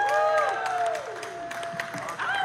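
Small club audience clapping and cheering at the end of a set, with a few whoops whose pitch arches up and down. The cheering dies down after about a second, leaving scattered claps.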